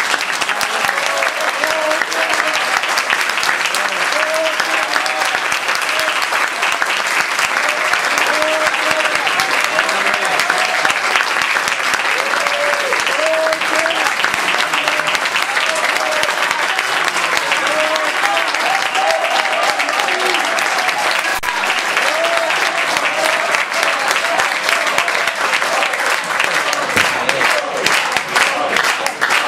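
Audience applause: dense, even clapping, with voices calling out over it.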